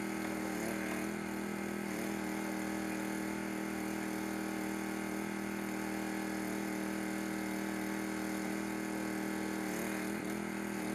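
An engine running at a steady, unchanging speed, heard as an even hum.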